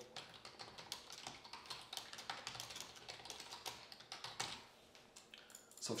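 Computer keyboard typing: a quick, irregular run of faint keystrokes as a note is typed in, with a short pause near the end.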